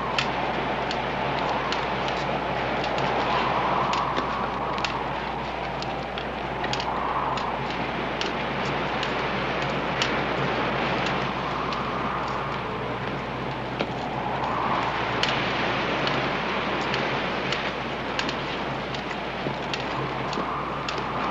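Wind blowing through the trees in slow gusts, with a wavering whistle that rises and falls every few seconds. Irregular crackles and snaps run through it, the sound of people pushing through brush and dry twigs.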